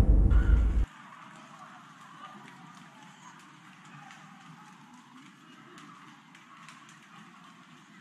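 A loud title-card sound cuts off about a second in. After it comes the faint, muffled sound of a phone recording in a street: distant voices and scattered light clicks like footsteps.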